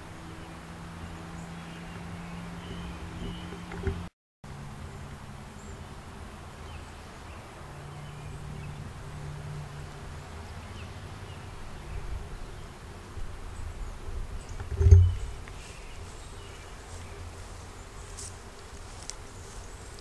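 Low, steady buzzing of a flying insect over outdoor background hiss. The sound cuts out briefly about four seconds in, and a single low thump about fifteen seconds in is the loudest moment.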